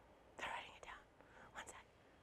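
Soft whispered speech in a few short, breathy bursts, about half a second in and again near the end.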